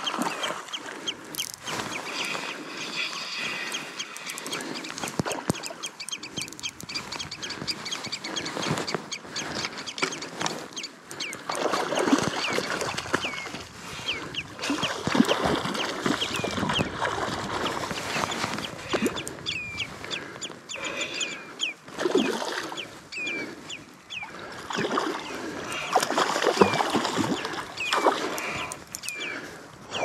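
A spinning reel being cranked while a hooked Arctic char is played, with swells of rustling noise and many short high chirps through the second half.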